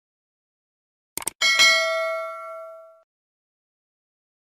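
End-screen sound effect for a notification-bell button: two quick clicks, then a bright bell ding that rings out for about a second and a half.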